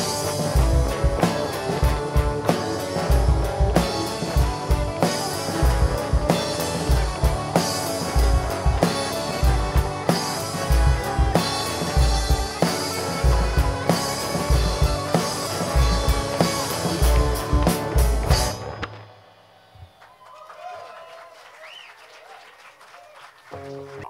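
Live folk-rock band with drum kit and guitars playing to the end of a song, which stops about three-quarters of the way through and leaves only faint background sound.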